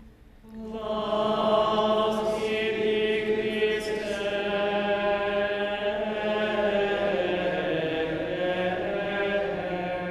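Congregation chanting the sung response to the Gospel, several voices together holding slow, long-drawn notes.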